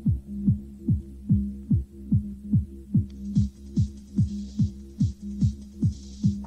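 Techno from a DJ set: a pounding four-on-the-floor kick drum about two and a half beats a second over a steady droning bass tone. The hi-hats are out at first and come back in about three seconds in.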